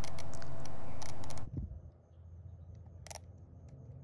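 Plastic rotary dial of a mechanical 24-hour plug-in timer being turned by hand to set the time, giving scattered sharp clicks. A steady background hiss cuts off about a second and a half in.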